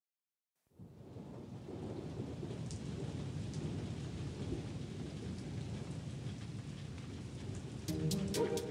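Animated-cartoon rain sound effect: steady rainfall fading in after a brief silence, about half a second in, then holding with a deep rumbling undertone and a few faint drip ticks.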